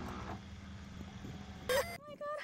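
Steady hiss and low hum of old videotape audio, with a brief click at the start and a short pitched sound near the end.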